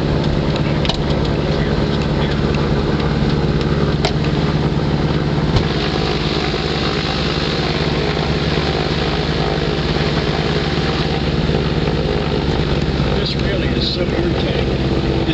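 Sparrowhawk gyroplane's engine and propeller running at a steady, even power, heard inside the cockpit as a constant drone.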